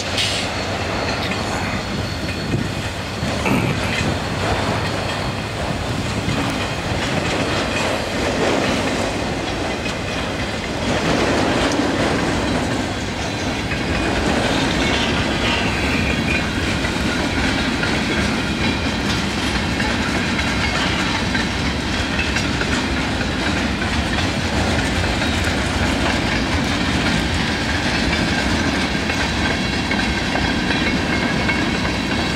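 Freight cars of a passing train rolling by: a steady rumble of steel wheels on rail, growing a little louder about eleven seconds in.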